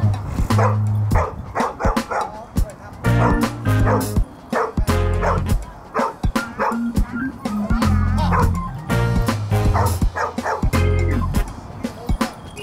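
Background music with a strong, steady bass beat, over dogs barking as they wrestle and chase in play.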